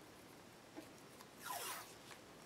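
A strip of paper tape pulled off its roll: one short ripping sound, falling in pitch, about one and a half seconds in, with a few faint handling taps.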